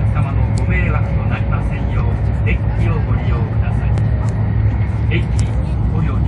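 Cabin noise of a Hokkaido Shinkansen train running at speed: a steady low rumble, with passengers' voices chattering faintly over it.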